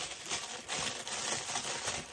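Paper wrappers rustling and crinkling as a boxed cosmetics set is unpacked by hand, with irregular crackles throughout.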